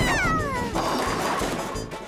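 A cartoon bunny's squeaky, wordless vocal cry sliding down in pitch, then about a second of noisy rumble, over background music.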